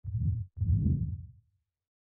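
Two deep, low hits of an intro sound effect, the second following about half a second after the first and fading out over about a second.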